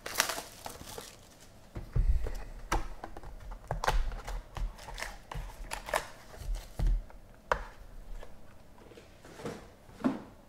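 A trading-card hobby box being opened by hand: crinkling and tearing of its wrapper and cardboard, then foil packs rustling as they are pulled out, with several knocks as things are set on the table.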